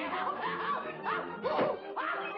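Orchestral cartoon score with a cartoon character's high-pitched snickering laugh, repeated in short bursts over the music.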